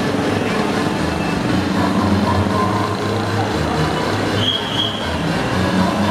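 Cars driving past close by on a busy city street, with dance music playing and crowd voices mixed in.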